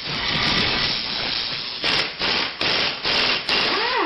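Animated logo sound effect: a steady noisy whoosh, then a run of about five sharp hits roughly every half second, ending in a short swooping tone.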